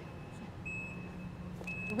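Power rear liftgate of a 2012 Nissan Quest closing: its warning beeper sounds a short high beep about once a second over the low steady hum of the liftgate motor.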